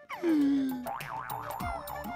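Comic cartoon-style sound effect. A tone slides downward, then a wobbling, warbling tone rises and falls about four times a second, with a low downward swoop near the end.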